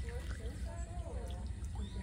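Indistinct voice sounds, short wavering pitched calls with no clear words, over a steady low rumble.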